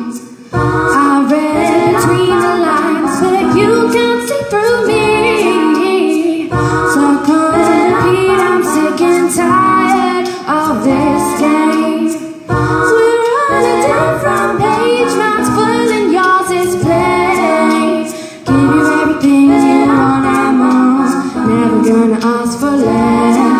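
A female voice singing live over layered, looped a cappella vocal parts built up on a loop pedal, the looped phrase repeating about every six seconds.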